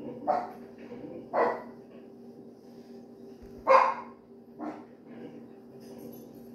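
A dog barking four times in short, sharp barks, the third the loudest.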